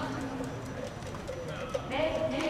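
Distant voices on a baseball field: drawn-out calls from players during fielding warm-up, with a faint knock near the end.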